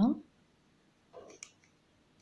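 A few faint, light clicks of a metal crochet hook catching and pulling cotton yarn through stitches, scattered and irregular.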